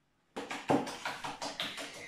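A whisk beating egg mixture in a stainless steel bowl, rapid regular taps about seven a second, starting abruptly a third of a second in.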